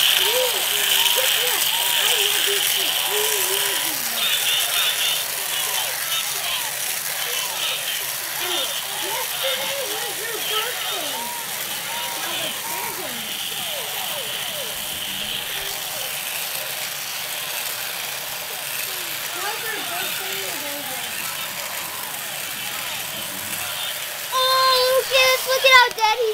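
Battery-powered action figure playing its electronic voice sound effect, a tinny yelling voice with rattly, crackly noise, going on for a long time.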